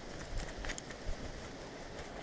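Faint rustling and a few small clicks of gear and clothing being handled, over a low rumble of wind on the microphone.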